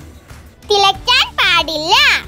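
A child's high-pitched voice speaking in a few short bursts in the second half, with faint music underneath.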